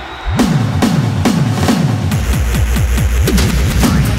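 Hardcore techno track kicking in: deep electronic kick drums, each falling in pitch, at about two a second. From about two seconds in they come faster over a steady bass.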